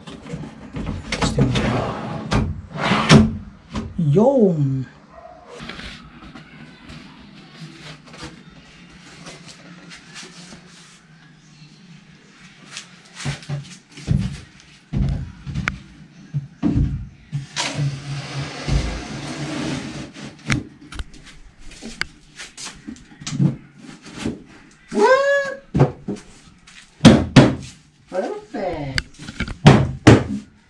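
Wooden knocks and thunks as a plywood dresser top and drawers are set in place and fitted, with a stretch of scraping wood on wood partway through. Two short squeaky rising-and-falling sounds also come through.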